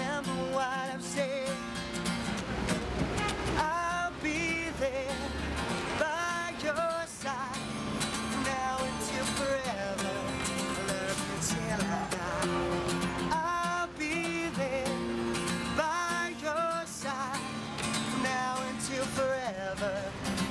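Acoustic guitar strummed, with a man singing a melody over it in several phrases of long, wavering held notes.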